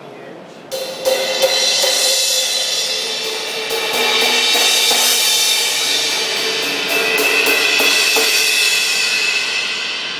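Paiste Twenty Custom Collection Full crash cymbals in 16, 18 and 20 inch struck repeatedly with a wooden drumstick. The strikes start just under a second in, and their ringing overlaps into a sustained wash that fades near the end.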